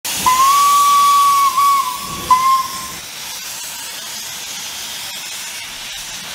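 Steam locomotive whistle sounding two blasts, a long one of about a second and a half and then a short one, over the hiss of escaping steam. The hiss is loud during the whistle and then settles to a steady, quieter hiss.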